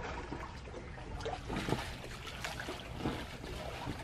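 Water trickling and dripping, an irregular patter of small drips over a steady wash.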